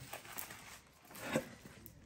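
Faint handling noise from strapping on nylon ankle weights and getting up, with two short light knocks or scuffs, about half a second and a second and a half in.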